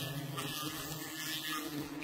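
A steady low hum of many honeybees flying around their wild comb, the buzz of a disturbed colony, under a continuous hiss.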